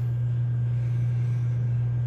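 A steady, unchanging low hum, with nothing else standing out.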